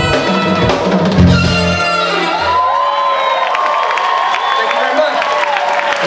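A live jazz band of electric bass, drums, keyboards, trumpet and saxophone plays the last bars of a tune and lands on a final hit about a second in. The hit rings out and dies away by about halfway. The audience then cheers and applauds.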